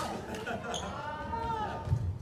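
A badminton racket hits a shuttlecock once with a sharp crack, followed by a player's voice calling out and a low thud on the wooden court near the end.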